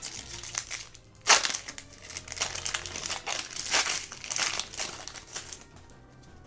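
Foil Yu-Gi-Oh booster pack wrapper crinkling as it is torn open by hand. There is a sharp crackle about a second in, then irregular crinkling that dies away shortly before the end.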